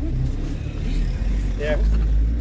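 Low, steady engine and road rumble inside a moving minibus cabin, growing a little louder near the end. A voice says "yeah" briefly near the end.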